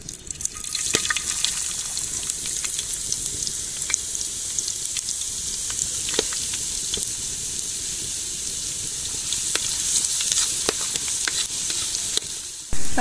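Small chopped pieces frying in hot oil in a clay pot: a steady sizzle with scattered pops and crackles.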